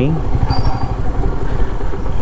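Royal Enfield Meteor 350's single-cylinder engine running steadily at low speed, a continuous low rumble heard from the rider's seat.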